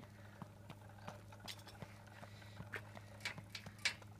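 Faint footsteps on a tarmac path, about two or three light ticks a second, over a steady low hum.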